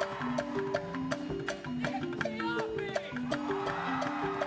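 Live band music led by a marimba, playing a repeating melodic pattern over a steady percussion beat.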